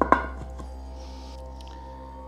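Two quick knocks as the gas-lift piston is pushed down into the bar stool's round metal base, then a steady music bed.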